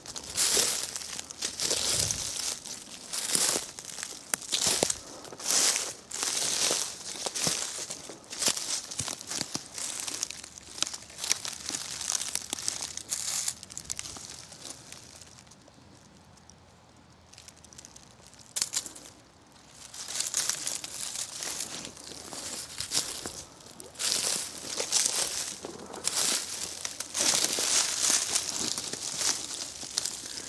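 Footsteps crunching through dry leaf litter at a walking pace, with a lull of a few seconds about halfway through before the crunching resumes.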